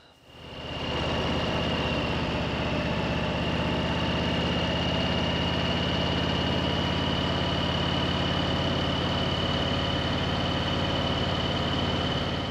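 Harley-Davidson Street Bob 114's Milwaukee-Eight 114 V-twin engine running at a steady, even pace while the bike is ridden along, fading in at the start. A thin steady high whine sits above the engine note.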